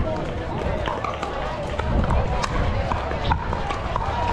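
Pickleball paddles striking a plastic pickleball in a soft net rally: several sharp pocks, roughly one a second, over a low outdoor rumble and background chatter.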